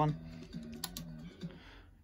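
Two quick sharp clicks close together a little under a second in, over faint low sound from the TV playing the DVD menu, which dies away toward the end.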